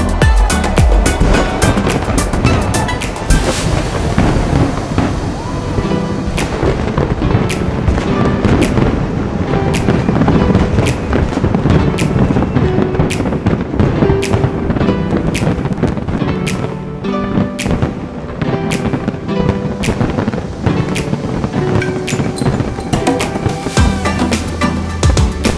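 A fireworks display: a dense, continuous run of bangs and crackles from shells bursting, many a second, with music playing along with it.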